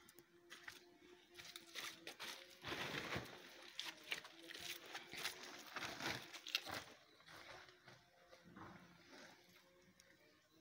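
Faint rustling and crinkling of a cement bag being handled, mixed with scattered light scrapes and scuffs. It is busiest from about two seconds in until shortly before the end.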